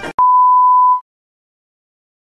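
A single steady, high-pitched electronic beep, one pure tone lasting just under a second and added in the edit.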